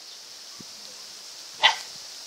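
A setter dog barks once, a single short sharp bark near the end.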